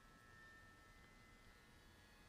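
Near silence: faint room tone with a few faint, steady high tones.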